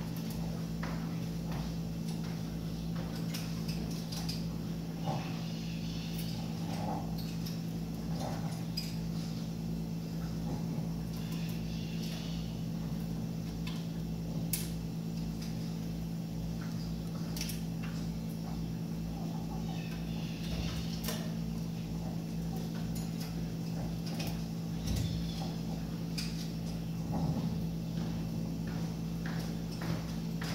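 Chopi blackbirds (pássaro-preto) giving short calls now and then, over a steady low hum and scattered light clicks and taps.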